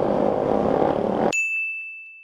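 Motorcycle engine and road noise while riding in traffic, cut off abruptly about a second in by a single high-pitched ding sound effect that rings and fades away.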